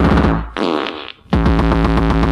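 Early hardcore (gabber) rave music from a DJ mix: the pounding electronic beat cuts out about half a second in. A short gliding, warbling electronic sound follows, then a brief gap, and the full beat comes back abruptly a little over a second in.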